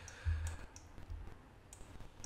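A few faint, sharp clicks from a computer mouse and keyboard over quiet room tone.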